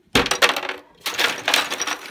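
Ice cubes clattering into a plastic pitcher in two rattling pours, the second starting about a second in.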